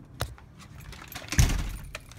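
Light metallic jangling and clinking with a few sharp clicks, and a louder dull thump about one and a half seconds in.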